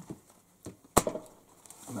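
A small glass jar set down on a wooden table: one sharp knock about a second in, with a fainter tap just before it.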